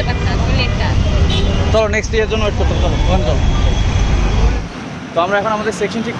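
Busy street traffic with a heavy low rumble and voices talking over it; the rumble cuts off suddenly near the end, leaving a man's voice.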